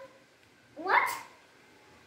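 A child's voice: one short vocal syllable about a second in, rising then falling in pitch.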